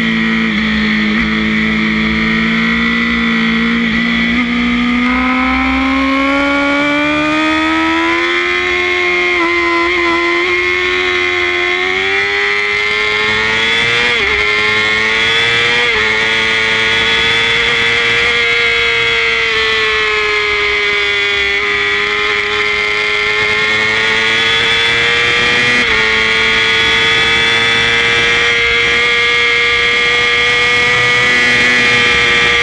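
Racing motorcycle engine heard from on board, revving hard under throttle. Its pitch climbs steadily over the first half and then holds high, with a few brief hitches in pitch.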